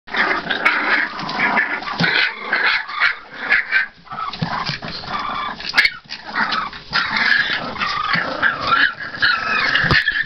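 A litter of three-week-old American bulldog puppies whining and yelping over one another in a continuous, loud chorus, with a sharp tick just before six seconds in.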